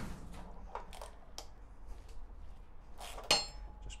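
Small metal clinks of a steel pinch bolt and a Torx socket tool being handled at a motorcycle's front fork leg: a few light ticks, then one louder ringing metallic clink about three seconds in.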